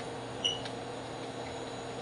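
Room tone: a steady low electrical hum and hiss on the recording, with one faint, brief high blip about half a second in.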